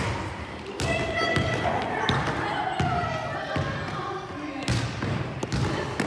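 Indistinct voices echoing in a gymnasium, with irregular low thuds on the wooden floor.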